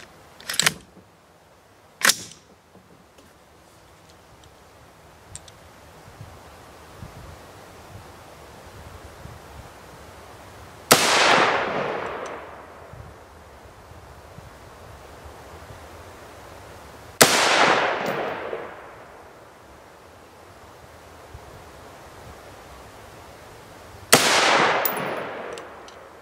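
An AR-15 rifle with a Davidson Defense 5.56 upper fires three single shots, about six to seven seconds apart. Each shot is followed by a long echo that fades over a second or two. Two sharp clicks come before them, near the start.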